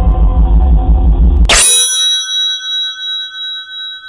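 Live band music with heavy bass cuts off abruptly about a second and a half in with a sharp swoosh. A bright electronic chime follows, several steady ringing tones that hold on with a pulsing wobble, an outro sound effect over the end card.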